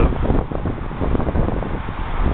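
Wind buffeting the camera's microphone on the open deck of a moving ship: a loud, gusty low rumble.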